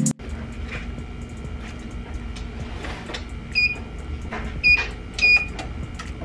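Heat press's electronic timer beeping three short times over a steady low hum, with a few light knocks of handling.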